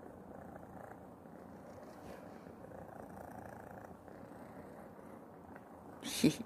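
Domestic cat purring steadily close to the microphone while a hand strokes its head.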